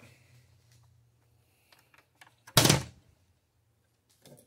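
A Rutan Long-EZ's fibreglass nose hatch door swung shut onto the nose, closing with a single loud thunk about two and a half seconds in.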